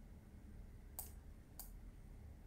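Two faint, short clicks about half a second apart, most likely a computer mouse being clicked, over near silence.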